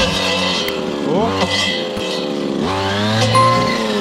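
Two-stroke brushcutter engine running at high revs while its head cuts through dense brush. The pitch sags and climbs back up twice as the engine takes the load of the stems.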